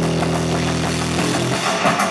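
Rock band playing live on electric guitar, bass and drum kit. A held, ringing chord sustains, then the drums come back in with sharp hits near the end.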